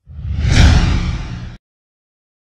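A transition whoosh sound effect with a deep rumble under it. It swells to its loudest about half a second in, then cuts off abruptly about a second and a half in.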